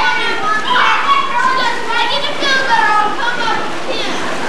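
Several children's voices, high-pitched and overlapping, shouting and chattering as they play in an indoor swimming pool, over a steady wash of moving water.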